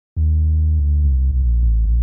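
A deep sub-bass synth note, sounded by clicking in FL Studio's piano roll. It starts a moment in and is held, its tone turning brighter just under a second in.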